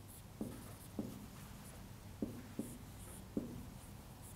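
Whiteboard marker drawing on a whiteboard: faint scratching strokes with about five light taps of the tip.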